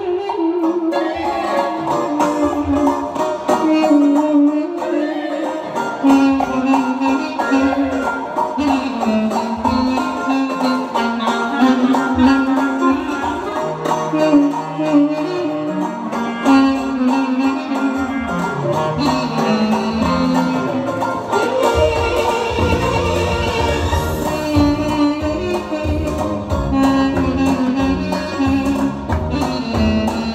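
A traditional folk melody played live on a wind instrument, a single ornamented line over backing accompaniment. The bass and beat of the backing grow fuller about two-thirds of the way through.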